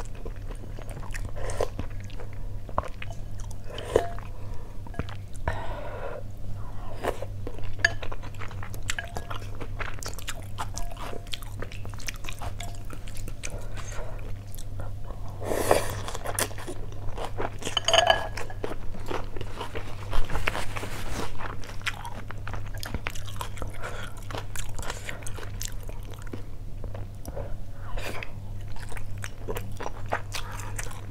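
Close-miked chewing and slurping of rice noodles in beef-stew soup: wet mouth sounds and small clicks throughout, with a longer slurp of noodles about halfway through. A low steady hum runs underneath.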